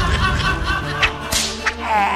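A trailer sound effect over background music: a sharp crack about a second in, followed by two shorter snaps.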